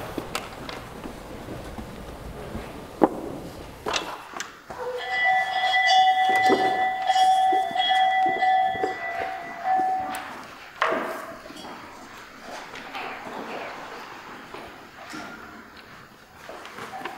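Scene change on a stage: scattered knocks and thumps, as of footsteps and set pieces being moved, with a steady whistle-like tone held for about five seconds in the middle.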